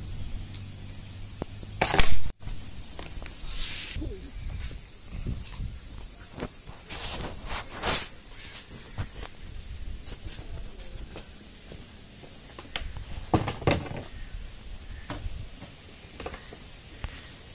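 Scattered clicks and knocks of hand-tool work on a sprayer's pump body, an adjustable wrench on its bolts, with the loudest knock about two seconds in.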